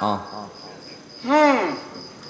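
A male Yakshagana actor's voice: one drawn-out exclamation about a second in, its pitch rising and then falling, between lines of dialogue. A faint steady high-pitched tone runs underneath.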